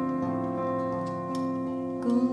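Live improvised world-music ensemble playing, with several notes held and ringing steadily.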